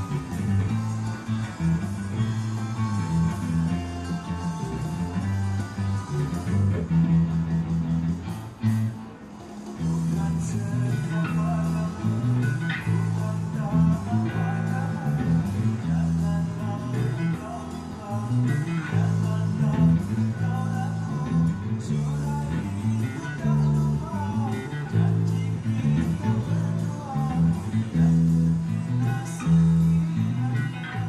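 Electric bass guitar played through an amplifier: a continuous line of plucked notes that keeps moving in pitch, with a brief lull about eight seconds in.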